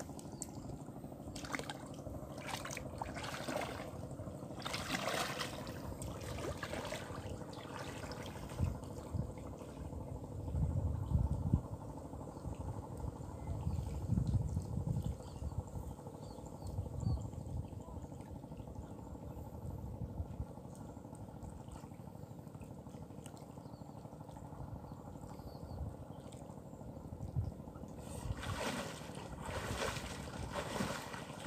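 Water splashing and trickling as a person wades through a shallow reservoir, with clusters of splashes in the first few seconds and again near the end.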